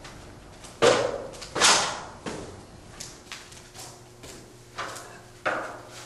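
Handling noise from drywall work: about eight short, irregularly spaced scrapes and knocks of a steel taping knife, mud pan and stepladder.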